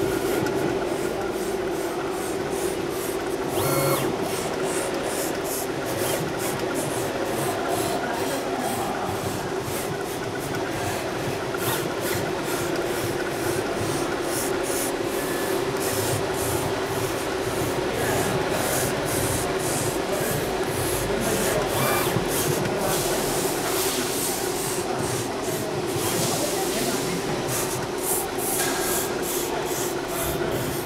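SINAJET vertical inkjet cutter plotter running, its servo-driven carriage travelling along the rail over the paper. A steady hum runs throughout under a dense, irregular patter of short ticks from the moving head.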